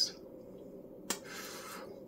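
Quiet room tone with a single sharp click about a second in, followed by a short soft hiss like a breath.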